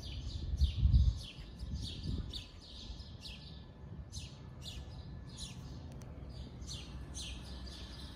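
Songbirds chirping: short high chirps that sweep downward, repeated every half second or so. A low rumble about a second in.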